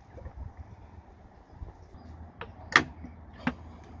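Plastic molasses bottle and its loose-fitting lid being handled and squeezed over a plastic funnel: three sharp clicks in the second half, the middle one loudest, over a low steady rumble.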